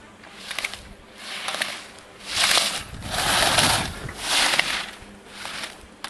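Slalom skis scraping and carving on hard-packed snow, a hiss that swells and fades with each turn about once a second, loudest in the middle as the racer passes closest. A few sharp clicks run among the turns.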